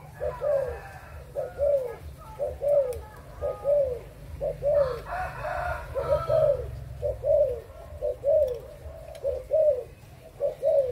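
Spotted dove cooing in its song, short arched coos that rise and fall, coming in pairs and threes about once a second and repeating steadily.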